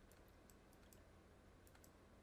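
Near silence: room tone with a low steady hum and a few faint computer-mouse clicks.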